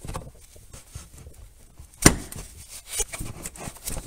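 A rag wiping spilled gear oil off a manual transmission case: faint rubbing and small scattered clicks, with one sharp knock about two seconds in and a lighter one a second later.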